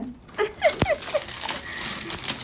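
Paper gift bag and tissue paper crinkling as a toddler opens a present, with a few brief soft voice sounds and a single sharp click just under a second in.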